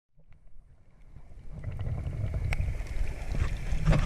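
Underwater sound picked up by a camera below the surface: a steady low rumble of moving water with scattered sharp clicks, fading in over the first second and a half.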